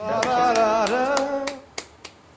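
A voice holding a sung or hummed note for about a second and a half, with a few sharp claps or clicks over it, followed by a single click just before the end.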